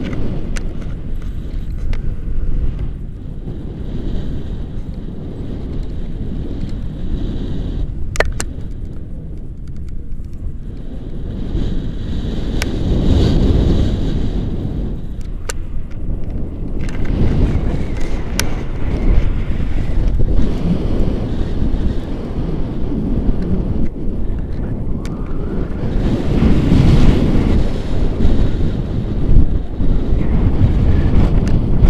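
Rushing air of a paraglider in flight buffeting an action camera's microphone, a loud low rumble that swells and eases in gusts, with a few brief sharp clicks.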